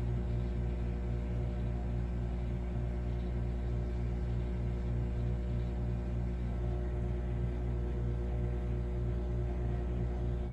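Microwave oven running: a steady low electrical hum from its transformer and magnetron, with a faint regular pulsing, as it cooks a pan of cake batter.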